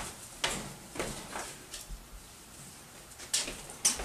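A few short knocks and clatters, unevenly spaced, with the sharpest two near the end: someone moving about and handling things while fetching a watering can.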